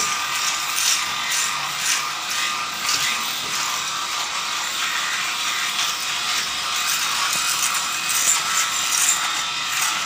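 Electric shaver running steadily and buzzing as it is worked over a foam-covered face and neck for a close shave.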